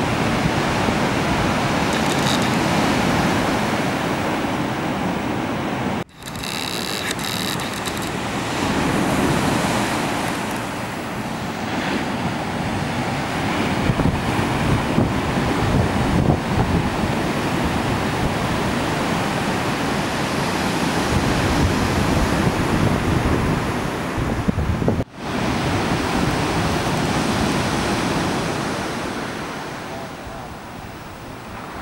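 Ocean surf breaking and washing, mixed with wind buffeting the microphone, as a steady rushing noise. It cuts out briefly twice, about six seconds in and again near the end.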